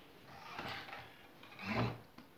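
A wooden door's brass lever handle pressed down and the latch working as the door is pushed open, with a scraping rattle and then a dull knock near the end.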